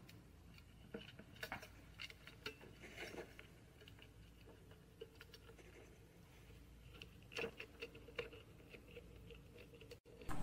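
Near silence with low room hum and scattered faint clicks and rustles of hands handling test wires and a clamp on the bench, with a slightly louder cluster of clicks about seven seconds in.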